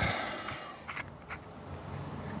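Quiet workshop room tone with a few faint clicks and light scrapes, about a second in, as small metal fuel filler parts are turned over in the hands.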